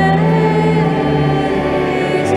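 A cantor singing the responsorial psalm over sustained organ chords, the voice moving smoothly between held notes.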